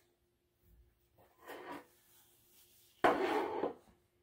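Ceramic plate scraping and sliding across a wooden tabletop as it is set down: a faint rub about a second and a half in, then a louder scrape lasting almost a second near the end.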